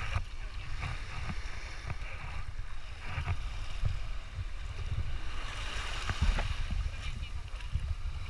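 Wind buffeting the microphone with an uneven low rumble, over small waves and water sloshing at the shoreline.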